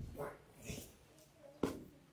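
A faint, distant voice from the congregation answering off-microphone, with two sharp knocks, one at the start and one about one and a half seconds in.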